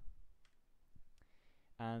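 A pause in a man's speech: near silence with a few faint short clicks, then his voice resumes near the end.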